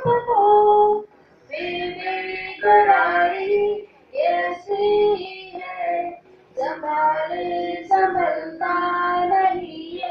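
A high voice singing a Hindi film song into a microphone, unaccompanied, in sung phrases broken by short pauses about a second in, at four seconds and at six seconds.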